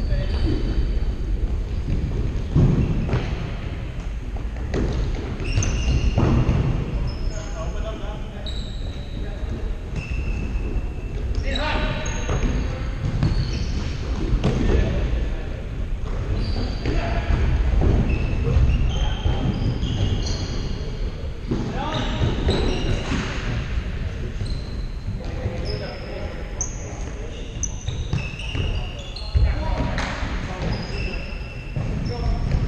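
Futsal play on a wooden sports-hall floor: sneakers squeaking in short high chirps, the ball thudding off feet and floor, and players calling out, all echoing in the large hall.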